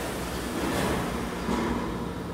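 Hydraulic water pump running steadily, a constant rumble with a low hum, as it builds the pressure inside an aircraft tyre being overinflated toward bursting.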